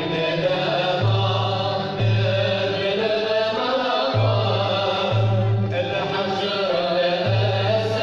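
Andalusian orchestra of ouds, mandolins and violins playing a Middle Eastern-mode melody, with voices singing in unison over bass notes that change about once a second.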